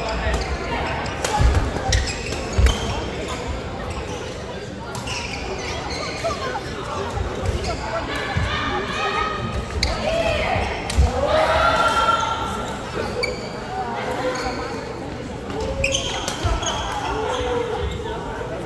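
Badminton play in a large hall with a wooden floor: sharp racket-on-shuttlecock hits and footfalls in the first few seconds, echoing in the room. Then voices from around the hall, loudest from about eight to twelve seconds in.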